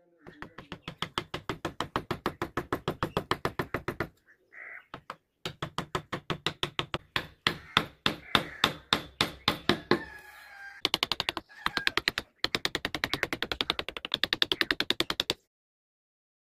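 A wood-carving chisel being struck in rapid, even taps, about seven a second, as the outline of a relief is stabbed into the wood. The taps come in runs with short pauses between them.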